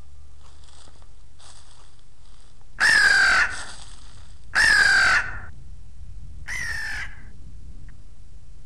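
A crow cawing: two faint calls, then three loud harsh caws about two seconds apart, the last a little softer.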